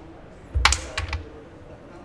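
Carrom break shot: the striker is flicked into the centre cluster of carrom men with a sharp crack about half a second in, followed by a short burst of pieces clacking together and against the board's wooden frame around a second in.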